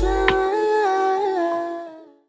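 Music ending: a smooth, humming melody of held notes that step up and down. The bass drops out about half a second in, and the music fades out near the end.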